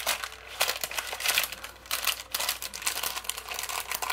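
Clear plastic packaging bag crinkling and rustling in irregular crackles as hands handle it and pull small nail-product bottles out of it.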